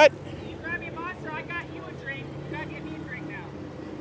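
Background chatter of several people talking, over the steady low hum of a car engine idling. There is a short, loud rising whoop right at the start.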